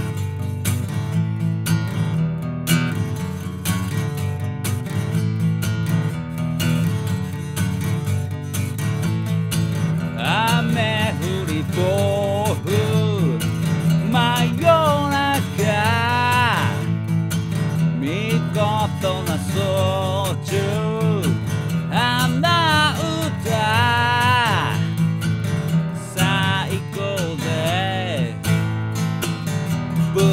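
Epiphone FT-110 Frontier acoustic guitar strummed steadily, with a man's singing voice coming in about ten seconds in and going on in phrases over the strumming.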